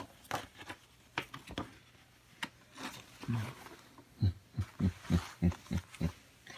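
Paper rustling and crackling as a large folded poster is opened out, with scattered sharp clicks. In the second half comes a quick run of about six short, low voice sounds, the loudest part.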